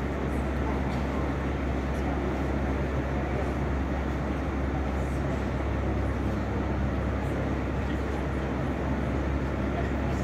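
Steady low rumble of a large indoor arena's background noise, unchanging throughout, with indistinct voices in it.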